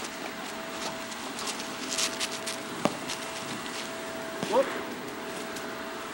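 A thrown ball bouncing once on asphalt: a single sharp knock about three seconds in, after a scatter of light clicks and rustles, over a steady faint hum.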